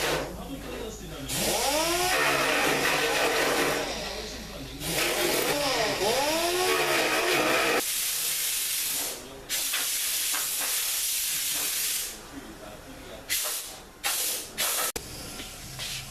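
Compressed-air tool on a coiled air hose, hissing in several bursts of a few seconds each, with a few shorter bursts near the end.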